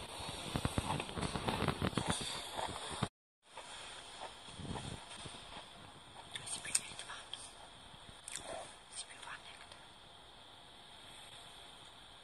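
Two people whispering to each other in hushed voices. The sound cuts out completely for a moment about three seconds in, then returns fainter, with scattered soft clicks and rustles.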